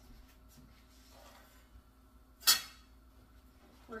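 A single sharp clink of a dish being set down on a stone kitchen countertop about two and a half seconds in, with a short ringing decay, amid faint handling sounds.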